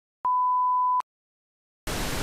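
Intro sound effect: a single steady, pure electronic beep lasting about three quarters of a second, then a short silence, then a hiss of TV-style static that starts just before the end as the title card glitches.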